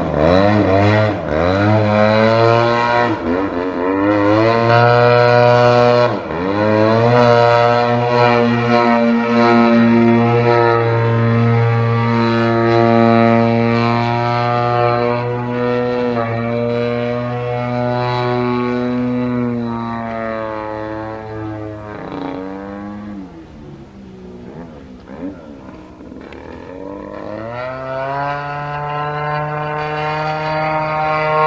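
Extreme Flight 85-inch Extra 300 EXP model aerobatic plane's engine and propeller rising and falling in pitch with the throttle. It swoops down and up several times early, holds high and steady through the middle, drops back and quieter a little after twenty seconds in, then opens up again near the end.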